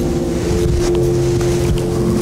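Soft sustained keyboard chords held under a prayer, one chord moving into the next about half a second in.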